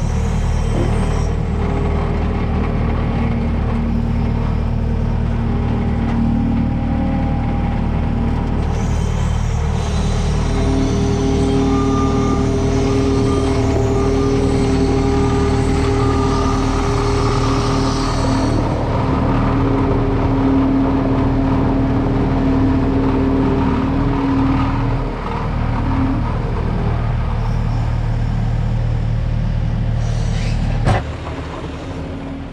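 Diesel skid steer engine running steadily under the operator's seat while the machine drives carrying a loaded bin on its forks. The engine note climbs about a third of the way in and holds there.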